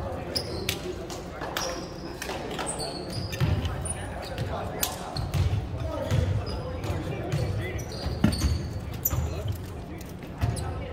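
Sounds of a volleyball game in a large, echoing gym: scattered thuds of a ball on the hardwood floor, brief high squeaks of sneakers and indistinct voices.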